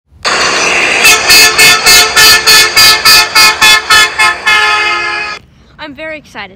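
Loud vehicle horn, held at first, then honked in quick pulses about three a second, then held once more before it cuts off suddenly.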